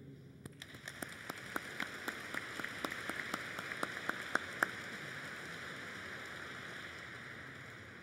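Audience applause. One person's sharp claps sound close by through the first four or five seconds over the crowd's clapping, which then carries on evenly and fades toward the end.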